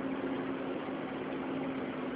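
A steady, unchanging mechanical hum with a faint hiss beneath it, holding one low tone throughout.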